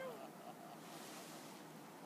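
Faint, steady hiss of light wind, with a short vocal sound at the very start.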